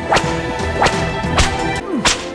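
Whip lashes landing in a steady rhythm, three sharp cracks in two seconds with another just as it ends, over background music.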